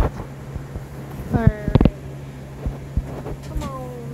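Steady low hum of an electric fan, with a few knocks from the phone being handled and a short vocal sound falling in pitch about a second and a half in.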